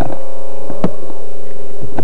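Steady electrical hum in a camera's audio, with knocks and rustles of a hand packing a parachute and its cords into a foam cargo hold. One sharp knock comes a little under a second in and another near the end.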